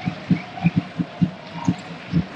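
Drums in the stadium stands beating a fast, steady rhythm of about five low thumps a second, over the crowd's background noise.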